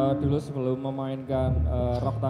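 A man talking into a microphone through a PA system, over a steady amplifier hum; a held steady tone underneath cuts off about half a second in.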